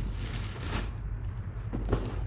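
Rustling and brushing of packaging being handled, a steady papery shuffle with a louder stroke about a third of the way in.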